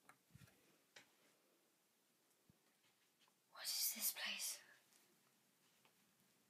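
A person whispering briefly, a breathy sound lasting just over a second near the middle, after a few faint taps at the start.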